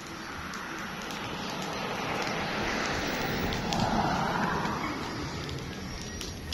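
A road vehicle passing by: tyre and engine noise swells to its loudest about four seconds in, dropping in pitch as it passes, then fades.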